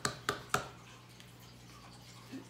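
Three sharp, short clicks or taps within the first half second, then quiet room tone with a steady low hum.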